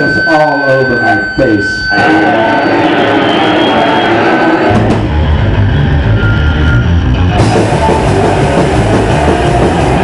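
Live punk rock band playing loud: a man's voice into the microphone over electric guitar, then the low end of bass and drum kit comes in about five seconds in, and the full band plays on.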